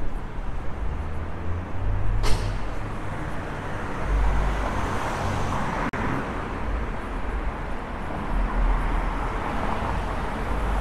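City street traffic: a steady low rumble of cars on the road, with a vehicle passing in the middle. A single sharp click comes about two seconds in.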